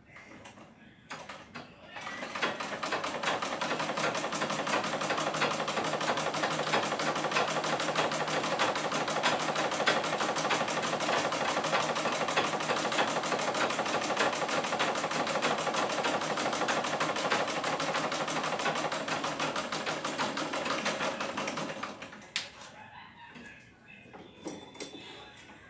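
Black domestic sewing machine running steadily, stitching fabric with a fast, even clatter. It starts about two seconds in and stops a couple of seconds before the end.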